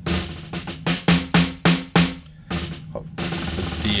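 Roland TD-1KV electronic drum kit's sampled snare drum, played from its PDX-8 mesh snare pad to show how responsive it is: a run of evenly spaced single hits, then a fast roll starting about two and a half seconds in.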